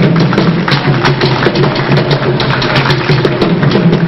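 Percussion-led music with drums, a dense run of rapid strikes over a steady low beat.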